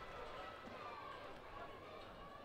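Faint, indistinct voices of people at a football ground over a steady background noise, with no words clear enough to make out.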